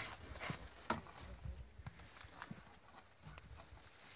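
Faint, scattered knocks and taps of a wooden board and hand tool being handled during woodworking, the sharpest about a second in.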